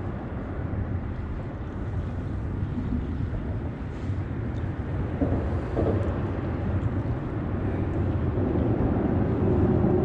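Steady low rumble of wind buffeting the microphone, growing a little louder near the end.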